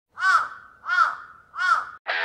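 A crow cawing three times, evenly spaced, each caw rising and falling in pitch.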